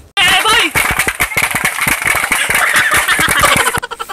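Loud, distorted phone-recorded audio of people shouting among a crowd, full of crackle. It cuts in abruptly just after the start and cuts off just before the end.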